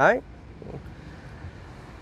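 A man's voice says one short word at the start, then a low, steady murmur of distant road traffic in the background.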